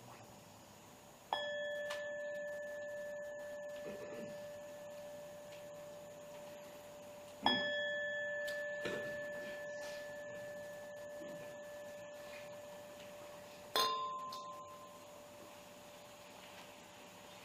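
A meditation bell struck three times, about six seconds apart, marking the close of a guided meditation. The first two strikes ring on, fading slowly; the third is cut short and fades within about a second.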